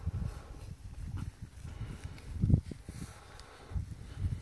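Low rustling and soft thuds of footsteps moving through long grass, with one louder thud about two and a half seconds in.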